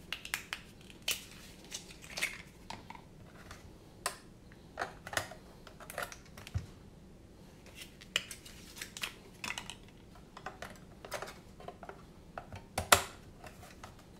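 Irregular plastic clicks and knocks from handling an FrSky X9 Lite radio transmitter while fresh batteries are put in and its case is turned over, with the loudest knock about a second before the end.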